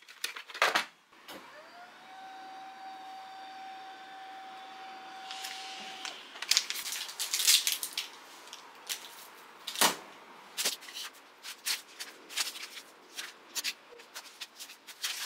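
A steady whirring hum glides up in pitch and holds for about four seconds. It is followed by crinkling and rustling of a plastic bag and crumpled paper receipts, with a sharp knock near the middle of the crinkling.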